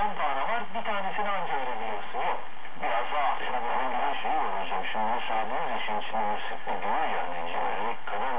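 Continuous talk from TRT 1 Radyo Bir, a Turkish station on 954 kHz mediumwave, played through the speaker of a Sony ICF-SW7600GR portable receiver. It is long-distance AM reception: narrow, thin-sounding audio with faint hiss behind the voice.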